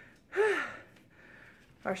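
A woman's short, breathy voiced gasp about half a second in, its pitch rising and then falling, followed by soft breathing: she is out of breath from running up and down the stairs.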